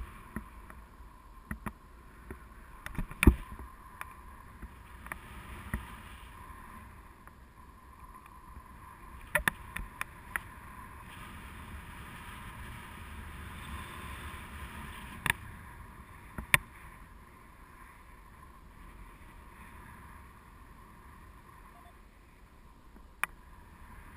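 Rushing airflow over an action camera during a tandem paraglider flight: a steady windy rush with low rumble, broken by occasional sharp clicks and knocks, a few of them in quick pairs.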